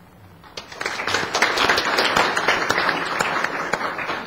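Audience applauding. The clapping starts about half a second in and quickly builds to a steady level.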